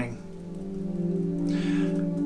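Ambient background music tuned to 432 Hz, holding a steady chord of low sustained tones. Near the end a short breath intake comes in just before speech resumes.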